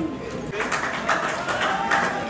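Scattered hand clapping, a few sharp claps a second, with people's voices over it.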